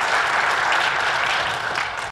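Audience applauding: dense, steady clapping from a large crowd that eases off slightly near the end.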